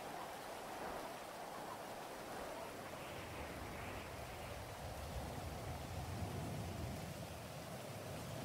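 Faint, steady hiss of background ambience with no clear events in it.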